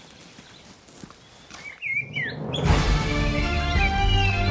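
Faint outdoor background, then a short bird call about two seconds in, followed by theme music with long held notes starting about two and a half seconds in.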